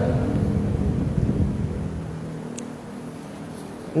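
A low rumble with a faint steady hum, fading away over about three seconds.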